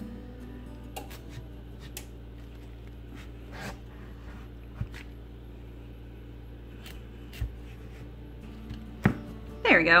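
Chef's knife being forced down through a hard butternut squash on a plastic cutting board: scattered crunches and knocks, a few seconds apart.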